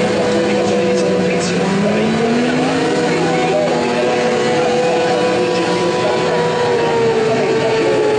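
Several superbike engines held at high revs during burnouts, their rear tyres spinning. The result is a steady multi-engine drone whose pitches drift slowly up and down.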